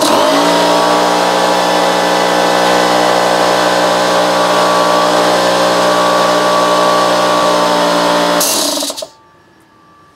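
Bostitch oil-free pancake air compressor starting up and running loud and steady. About eight and a half seconds in it is switched off, with a short hiss of air as it stops.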